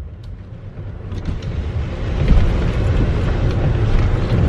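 Car cabin noise while driving: a low engine and tyre rumble with road hiss, growing louder over the first two seconds or so.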